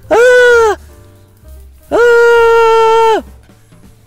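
A person yelling a long, held 'aaah' twice: a short cry at the start and a longer one about two seconds in, each sliding up at the start and down at the end. Faint music plays underneath.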